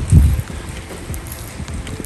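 Rain falling on wet pavement, a steady hiss with scattered drop ticks. A gust of wind buffets the microphone with a low rumble in the first half second.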